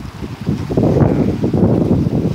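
Wind buffeting the microphone: a loud, low, gusting rumble that eases just after the start and swells again about half a second in.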